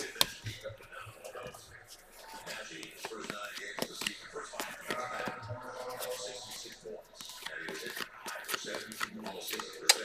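Stack of glossy chrome trading cards being flipped through by hand: card sliding against card, with many small clicks.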